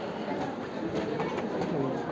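Birds cooing over faint background chatter of people.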